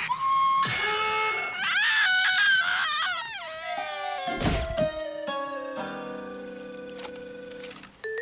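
Cartoon music score with comic sound effects: a wavering, trembling passage, then a long, slowly falling tone, with a thud about four and a half seconds in.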